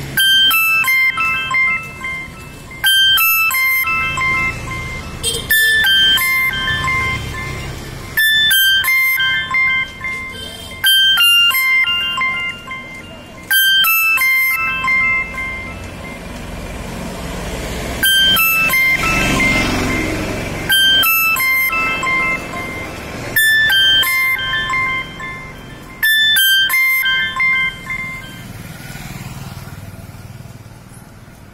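A short electronic jingle of a few beeping notes, each round starting sharply and repeating about every two and a half seconds, with a break of a couple of seconds near the middle. A low rumble sits under it, strongest just after the break.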